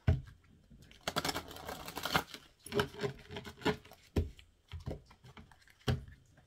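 A deck of cards being shuffled by hand: an irregular run of soft card slaps and rustles.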